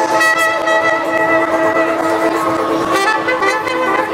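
Trumpet playing long held notes live over a loud electronic dance track. The notes change pitch about three seconds in.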